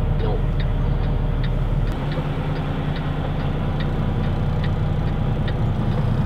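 Diesel engine of a Kenworth T680 semi truck running steadily, heard from inside the cab, with its note shifting about two seconds in. A regular light ticking runs alongside it, about two ticks a second.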